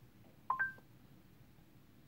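Google Assistant's electronic chime through the car's speakers: two short rising notes, a lower tone then a higher one, about half a second in.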